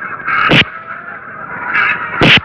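Boxing-gloved punches landing on a stuffed gunny sack hung up as a punching bag: one sharp, loud thump about half a second in, part of a series of blows a second or so apart.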